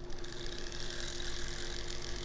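Dremel rotary tool running steadily at a gentle speed, a steady hum with a hiss above it, its burr lightly grinding silver out of a ring's stone setting to open it up.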